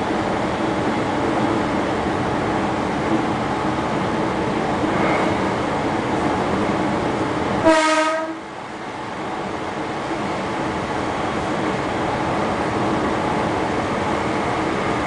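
Steady running noise of a JR Kyushu electric train heard from the cab, with one short horn toot about halfway through. Just after the toot the low rumble briefly eases.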